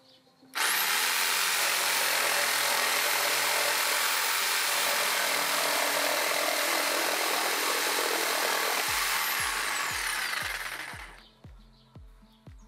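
Hyundai HY-JS 100 750 W jigsaw cutting through a wooden board. It starts suddenly about half a second in and runs steadily. Near the end its motor whine falls in pitch as the saw winds down at the end of the cut.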